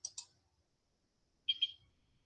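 A few short, faint clicks: two at the start and two more about one and a half seconds in.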